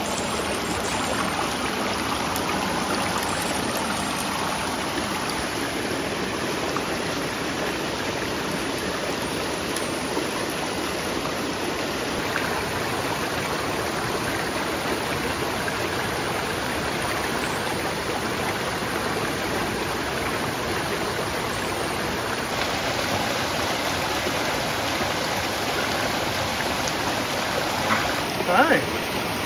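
Shallow, rocky mountain creek rushing over stones, a steady, unbroken rush of water.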